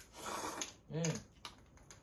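A person slurping noodles in one noisy slurp lasting about half a second, followed a moment later by a short hummed 'mm'.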